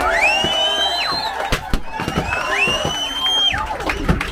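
Crowd cheering and clapping, with two long, high-pitched celebratory cries, each rising and then held for about a second, and a few sharp pops between them.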